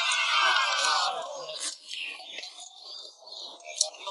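An edited-in sound effect with many voice-like strands falling in pitch together over about a second and a half. It is followed by quieter, scattered clicks.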